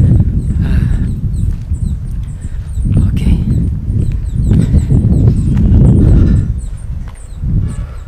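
Wind buffeting an open camera microphone: a loud, uneven low rumble that swells and dips, easing off briefly near the end, with faint high chirps above it.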